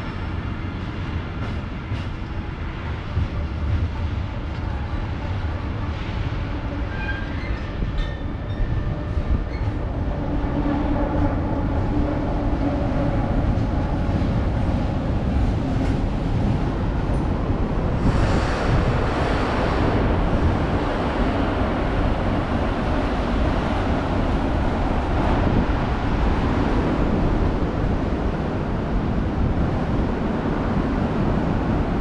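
Container freight train's wagons rolling past on the rails: a steady rumble of wheels on track, growing louder and brighter from about halfway through.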